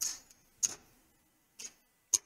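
Casino chips clicking together as losing bets are picked up off the craps layout. There are three short, sharp clicks, about a second apart.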